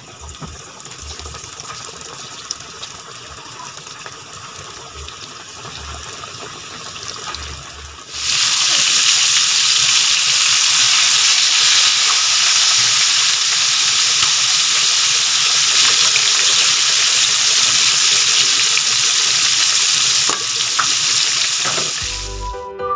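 Flour-coated pork chops deep-frying in hot oil in a wok: a steady sizzle and bubbling. The sizzle becomes suddenly much louder about eight seconds in.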